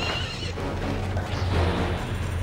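A horse whinnies briefly with a wavering call at the start, over a steady, low film-score drone.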